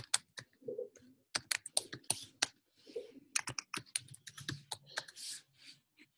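Typing on a computer keyboard: a quick, uneven run of about twenty key clicks.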